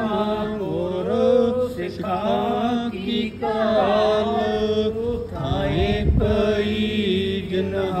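Devotional Sikh hymn (shabad) sung in a chant-like style, a melodic vocal line over steady held notes. A brief low rumble comes about five to six seconds in.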